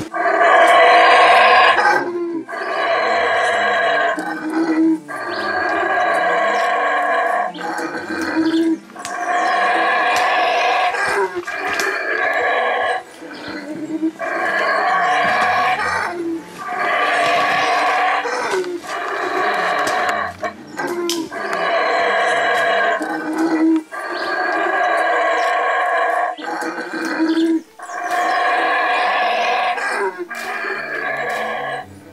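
Black howler monkeys roaring: more than a dozen long, rough calls one after another, each lasting a second or two, with short breaks between.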